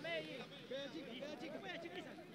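Faint voices from a football pitch, shouts and calls of players and onlookers carried on the field sound, with no one close to the microphone.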